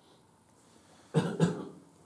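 A man coughs twice in quick succession about a second in.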